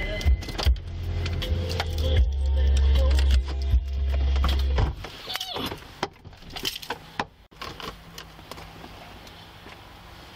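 A truck's car stereo playing bass-heavy music in the cabin, cutting off suddenly about five seconds in. Scattered clicks and rattling follow.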